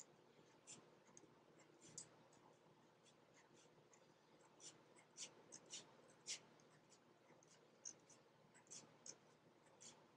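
Faint, quick, short strokes of a black pen on a painted cardboard cactus cutout, drawing small lines for cactus spikes.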